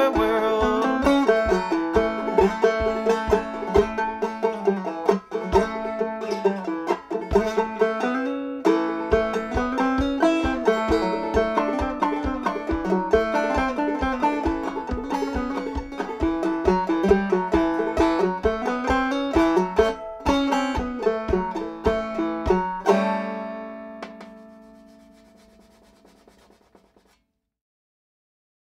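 A 1976 Bicentennial banjo, partly plastic, picking a fast instrumental tune with regular low thumps underneath. It ends on a final chord about three-quarters of the way through, and the chord rings out and fades away over about four seconds.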